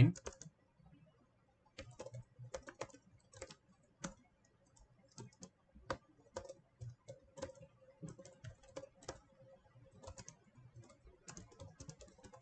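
Typing on a computer keyboard: faint, irregular keystrokes, starting about two seconds in.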